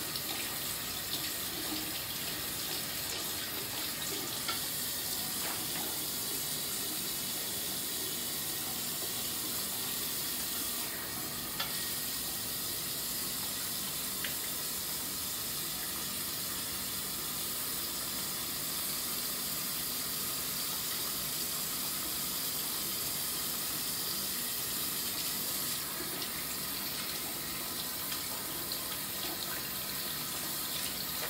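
Bathroom sink faucet running steadily into the basin while hands are washed under the stream, with a couple of brief clicks about four and eleven seconds in.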